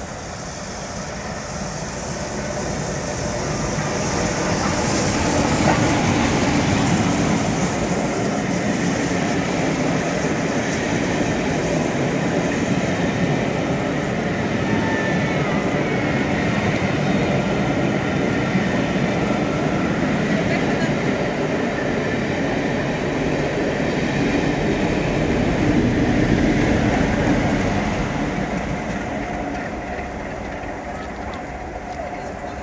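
Steam locomotive 61306 Mayflower, an LNER B1 4-6-0, passing at speed, loudest as it goes by a few seconds in. Its train of coaches follows with a steady wheel rumble and clatter over the rails, and near the end a diesel locomotive on the rear passes and the level peaks again before it fades.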